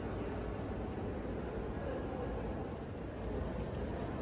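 Steady, indistinct hubbub of many visitors' voices and movement echoing in a large museum hall, with no single voice standing out.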